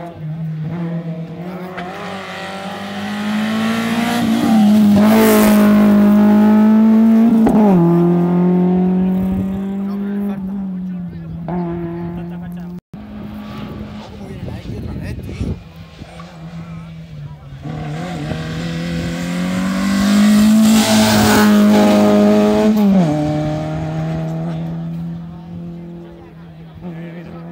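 Rally cars going by at full throttle, one at a time. Each engine note climbs as the car nears, is loudest as it passes, then drops sharply at a gear change. Two cars pass, about fifteen seconds apart.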